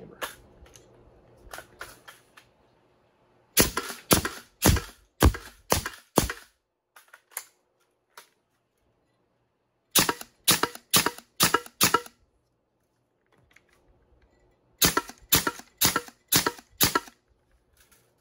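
3D-printed semi-automatic HPA (high-pressure air) foam-dart blaster firing: three quick strings of sharp air pops, five or six in each, about two a second.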